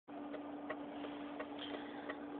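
Faint, regular ticking of a car's turn-signal flasher relay, about three ticks a second, over a steady faint hum inside a 1982 Volvo 242 cabin.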